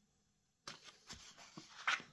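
Paper rustling and crackling as a large, stiff fold-out page of a photo book is handled and turned, starting after a short silence and growing louder near the end.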